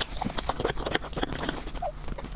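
Close-miked wet mouth clicks and chewing, an irregular run of quick soft clicks and smacks.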